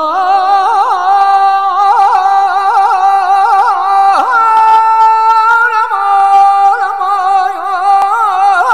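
A woman singing a slow, ornamented melody with vibrato, the notes held and wavering in pitch, with no low accompaniment heard.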